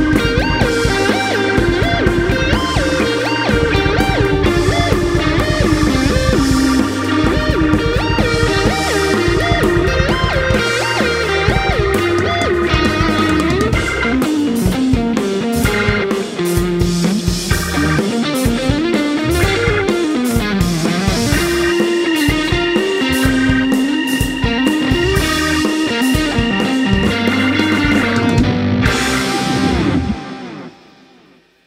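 Instrumental Hammond organ trio music: electric guitar, organ chords and drums playing a steady groove over a walking bass line.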